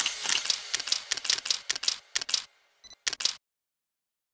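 Camera shutter clicking over and over in quick succession, about five clicks a second, stopping suddenly a little over three seconds in.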